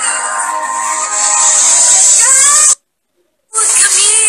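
Loud live concert music with a crowd's voices and cheering over it, picked up by a phone microphone with a harsh high hiss. The sound cuts out abruptly for under a second near the end, then resumes.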